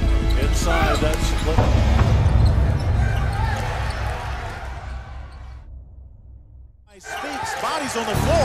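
Music with a steady beat, then from about a second and a half in, basketball game sound: arena crowd noise with sneakers squeaking on the hardwood court. It fades to a brief lull near the end, after which game sound and a voice return.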